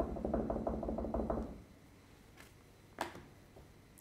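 A rapid, even run of clicks that fades out about a second and a half in, followed by a single sharp click near three seconds.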